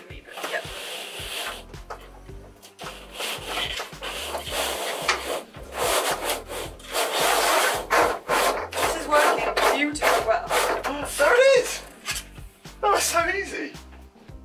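String and electrical cable being hauled through flexible plastic conduit, making a series of uneven rasping rubs as the string is pulled hand over hand.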